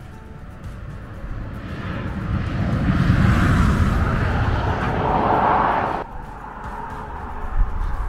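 A road vehicle passing: engine and tyre noise swell up over a few seconds, then cut off suddenly about six seconds in, over quiet background music.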